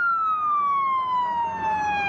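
Emergency vehicle siren wailing: one long, slow fall in pitch, then a quick rise near the end.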